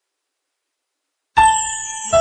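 Silence, then about two-thirds of the way in a song's keyboard intro begins with one sudden struck chord that rings on and slowly fades.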